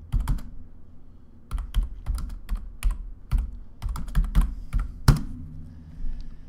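Typing on a computer keyboard: a few keystrokes, a pause of about a second, then a quick uneven run of keys ending in one harder stroke about five seconds in.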